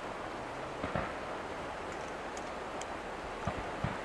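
Fireworks shells going off at a distance: a few dull thumps, one about a second in and two close together near the end, over a steady hiss.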